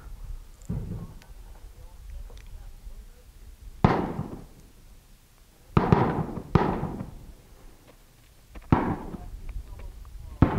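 Four sharp bangs, each with a short echoing tail, spaced one to two seconds apart, typical of gunfire on an open range. Faint small clicks come from the little .22 Short pocket revolver's cylinder and ejector rod as it is unloaded.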